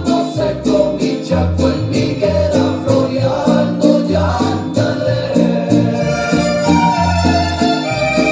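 Karaoke backing track of a Mexican ranchera song playing an instrumental passage, with strings over a regular, repeating bass line.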